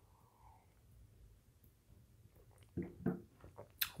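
Near silence for the first two and a half seconds while beer is sipped from a glass. Then, near the end, a few short soft mouth and throat sounds after the swallow, and a sharp mouth click.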